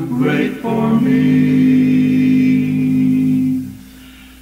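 A cappella gospel quartet singing in four-part harmony, holding one long chord that dies away near the end as the phrase closes.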